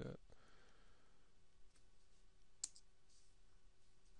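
Near silence: quiet room tone with a single sharp computer mouse click about two and a half seconds in.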